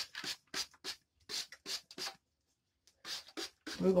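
Hands rubbing and scrunching damp locs freshly misted with an oil-and-water spray: a quick series of short, scratchy rustles, with a pause of about a second before a last few near the end.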